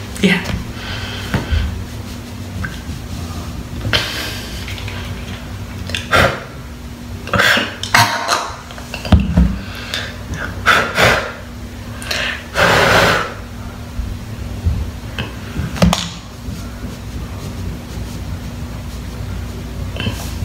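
Intermittent knocks, clatter and short rustles of plastic as a baby-powder bottle and a hair dryer are handled, one every second or two, with one longer rustle of about a second a little past the middle. A faint steady hum runs underneath.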